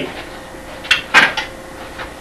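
A circular saw being set down, making two short knocks about a quarter second apart about a second in. The saw is not running.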